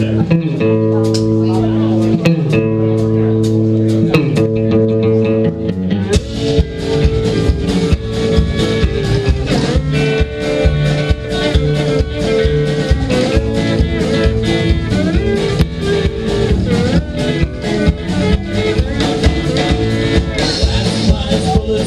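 Live alt-country band playing an instrumental intro: electric guitar and pedal steel hold sustained chords for about six seconds, then drums and upright bass come in with a steady beat.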